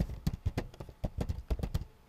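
Typing on a computer keyboard: a quick run of keystroke clicks, several a second.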